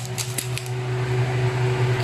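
Steady low mechanical hum of a running motor, with a fainter steady whine above it and a faint tick or two.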